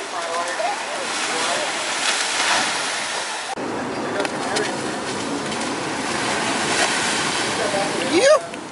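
Breaking shore waves and wash rushing steadily, with a sudden cut to another stretch of surf about three and a half seconds in. Faint voices in the first second.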